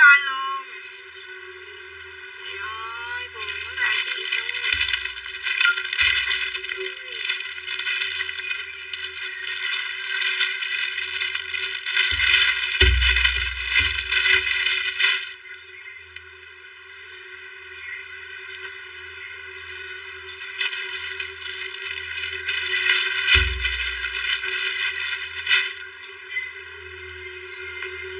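Clear plastic garment bags crinkling and rustling as clothes are pulled out and handled, in two long stretches with a few dull bumps.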